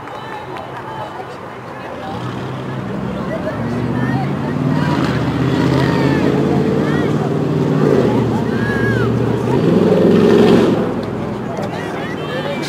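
A motor vehicle's engine passing close by, growing louder from about two seconds in, loudest near the end, then fading away.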